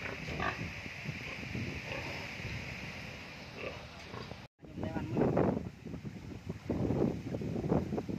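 Domestic pigs in pens grunting and calling. After an abrupt cut about halfway through, louder irregular splashing and sloshing of moving water follows.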